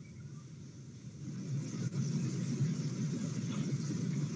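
Low, steady background noise with no clear tone or rhythm, growing louder from about a second in.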